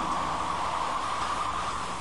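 A rushing hiss of noise, without pitch, that slowly fades toward the end of the soundtrack.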